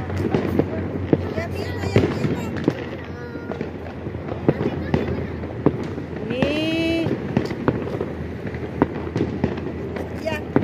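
New Year's fireworks and firecrackers going off around, a steady run of irregular sharp cracks and pops over a dense background rumble.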